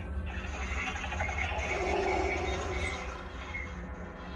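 A steady low rumbling drone, with a swell of hissing noise that rises toward the middle and fades away.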